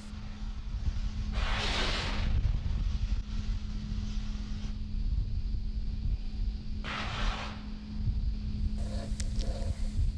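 Launch pad ambience at a fuelled Falcon 9 during propellant loading: a steady low rumble and a constant hum, with two short bursts of hissing, about two seconds in and again about seven seconds in.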